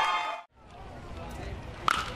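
Ballpark crowd noise fading out to a moment of silence, then faint crowd ambience and, just before the end, one sharp crack of a bat hitting a line drive.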